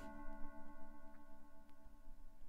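A held synthesizer chord from the iPad groovebox app fading slowly, with a couple of faint taps.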